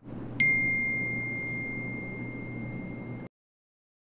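A single bell-like ding about half a second in, its clear high tone ringing on and slowly fading for nearly three seconds before it cuts off abruptly.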